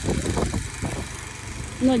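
A steady low rumble with a faint hiss above it and a few rough low pulses in the first second; a child's voice comes in near the end.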